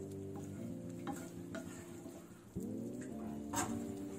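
A wooden spatula stirring thick salna gravy in a nonstick frying pan, with soft scrapes, a few light clicks against the pan and a low sizzle from the simmering gravy. Steady held tones run underneath, break off about two and a half seconds in and start again just after.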